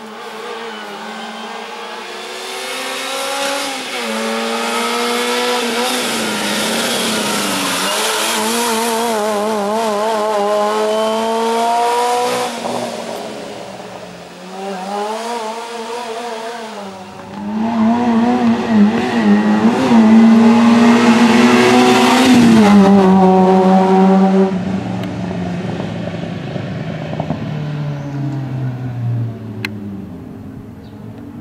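Small hatchback race car's engine revving hard, its pitch climbing and dropping again and again as it shifts and lifts through the slalom course. It is loudest as it passes close about two-thirds of the way in, then fades away.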